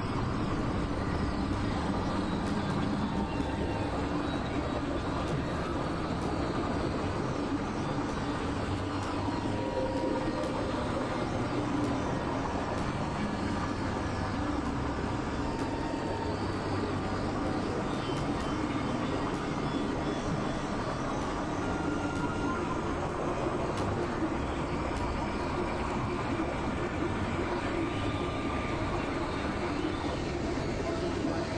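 Dense, steady experimental noise-drone texture: a rumbling wash of noise with short faint tones drifting through it.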